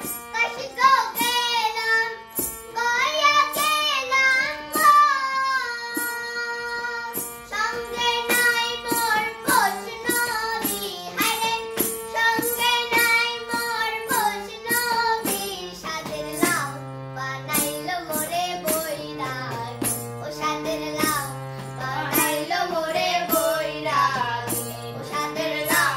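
A child singing a Bengali folk song to harmonium accompaniment, with held reedy chords under the melody and a steady beat; a woman's voice joins near the end.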